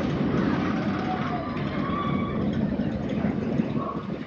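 Miniature railway train running past, a steady low rumble from the locomotive and its wheels on the rails.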